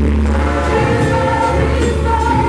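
Gospel choir of women singing together over a band with a steady bass line, the lead vocalist singing into a handheld microphone.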